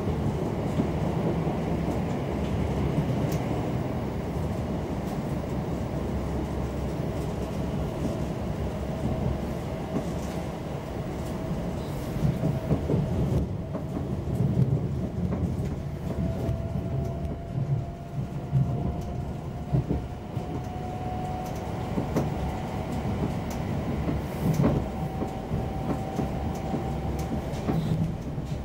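Inside a Class 720 Aventra electric multiple unit running along the track: a steady rumble of wheels on rail with occasional knocks over joints. In the second half a faint whine rises slowly in pitch.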